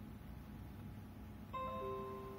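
A low steady hum, then about a second and a half in a short chime of a few falling notes from the PC: the Windows 10 notification sound as a desktop notification pops up after boot.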